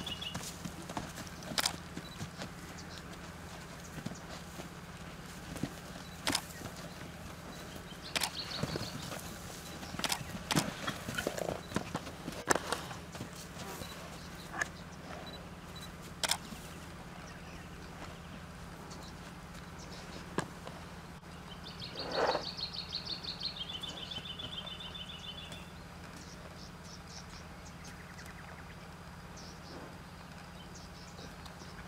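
A brumby's hooves moving about a dirt yard inside a steel-panel pen: scattered knocks and scuffs, thickest in the first half. There is one short loud snort about two-thirds through, and a bird trills in the background a few times.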